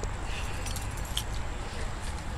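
Keys jingling faintly, with a few light clicks, over a steady low outdoor rumble.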